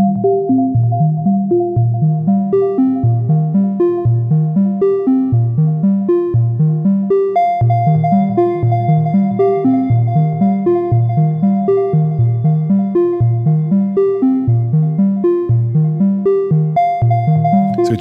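Software modular synth patch playing a looping sequence: a steady run of short, plucked-sounding pitched notes in the low register, over a held higher tone.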